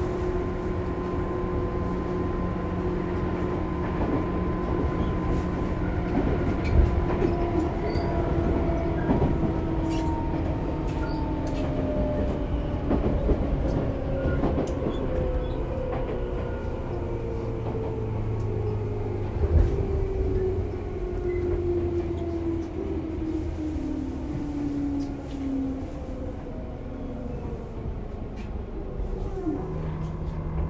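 Inside a Tobu 10030-series commuter train as it slows: the field-chopper-controlled traction motors whine in several tones that fall steadily in pitch, over the rumble of the wheels on the rails. A couple of louder thumps from rail joints come through about a quarter and two thirds of the way in.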